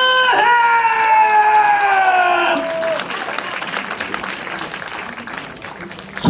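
A ring announcer calling a wrestler's name over the hall's PA, holding it in one long drawn-out call whose pitch slowly falls until it ends about two and a half seconds in. Then the crowd applauds and cheers.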